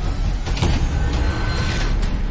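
Cinematic sound design for an animated logo: a deep low rumble with a whoosh about half a second in and a mechanical whir near the end, under music.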